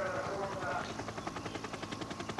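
Helicopter rotor chopping steadily: a rapid, even run of pulses.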